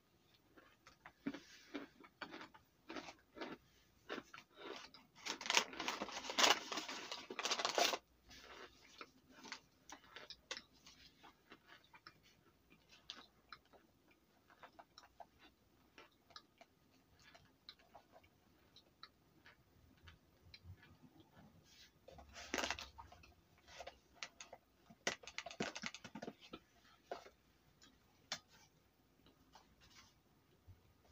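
Raw cornstarch being chewed and crunched, with soft clicks and crackles throughout. A louder stretch of crunching comes about five to eight seconds in, with shorter spells later on.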